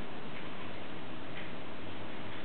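Steady background hiss and room noise with no distinct events.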